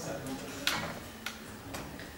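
Three sharp clicks or taps about half a second apart, the first the loudest, over a faint room background.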